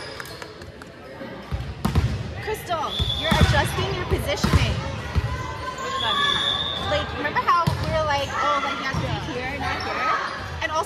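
Volleyball being hit and bouncing during a rally in a gym, a series of sharp thuds from about two seconds in, with players' shouts and calls over them.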